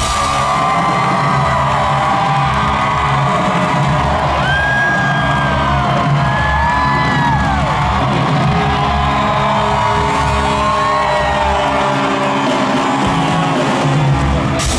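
A live ska-punk band playing loud, with bass, drums and guitar, heard close from the front of the crowd. High whoops and yells slide up and down over the music in the middle of the stretch.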